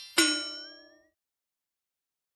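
A bright ding, a chime sound effect struck once about a quarter second in, its ringing tones fading out within a second. It follows straight on from a rising sweep.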